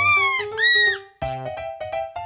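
Two short, high squeaks from a rubber squeeze toy in the first second, the second higher-pitched than the first, over children's background music.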